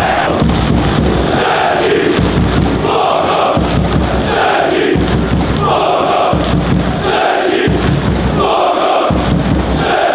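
A football crowd chanting in unison, with rhythmic clapping and a low beat recurring about once a second under the repeated chant phrases.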